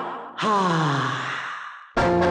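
A man's singing voice sliding down in pitch in one long, sigh-like falling note that begins about half a second in and fades away. Band music comes in sharply at the very end.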